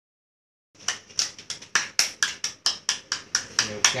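Hands clapping in a steady rhythm, about four claps a second, starting just under a second in; a voice begins near the end.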